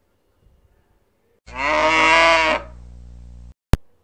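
A cow mooing, one call about a second long, used as a comedy sound effect. A low hum trails on after it and cuts off suddenly, and a single sharp click comes just before the end.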